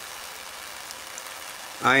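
Steady, faint sizzling hiss of corona discharge streaming off the wire tip of a small Tesla coil's ion-wind rotor. A man's voice starts near the end.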